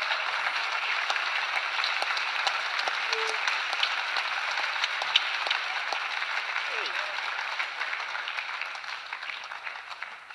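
Audience applauding: a dense, steady patter of many hands clapping, easing off slightly near the end.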